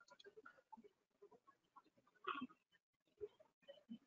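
Near silence: faint scattered background noises, with one brief, slightly louder sound a little past two seconds in.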